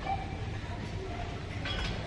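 Supermarket aisle ambience: a steady low rumble with faint scattered background sounds, and a brief sharper clatter near the end.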